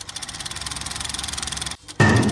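A rapid, evenly ticking whir, like a film projector running, used as a sound effect under a filmstrip transition graphic. It grows slightly louder and then cuts off suddenly shortly before the end.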